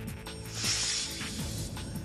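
A news-bulletin transition sound effect: mechanical ratcheting clicks and a whoosh from about half a second in, over a music bed.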